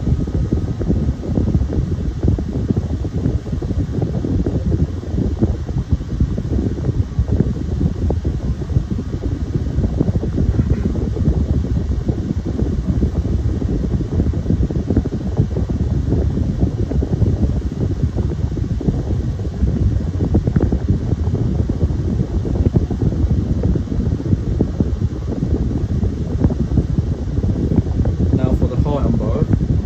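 Two small electric desk fans running together, a 6-inch Airflo and a 9-inch Challenge high-velocity fan on medium speed. A steady rush of air with gusty buffeting from the airflow hitting the microphone.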